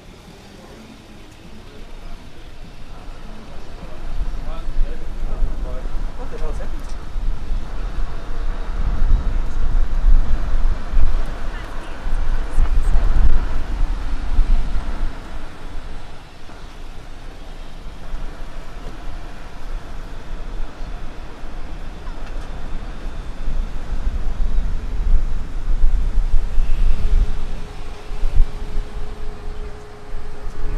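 Wind buffeting the microphone: a gusting low rumble that sets in a few seconds in and swells and dips, strongest around the middle and again near the end.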